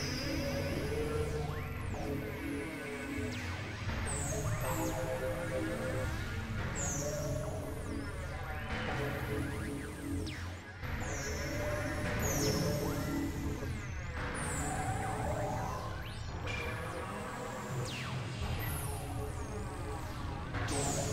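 Experimental electronic noise music: several synthesizer recordings mixed together into dense, layered low drones and held tones, with high falling sweeps recurring every couple of seconds.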